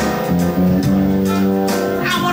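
A live jazz band playing an instrumental passage without vocals, led by a five-string electric bass with keyboard accompaniment.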